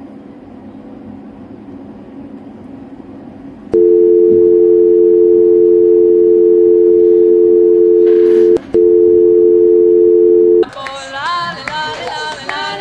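Telephone dial tone: two steady tones held together, starting about four seconds in, with a brief break after about five seconds, then running about two seconds more before cutting off. Near the end, music with singing begins.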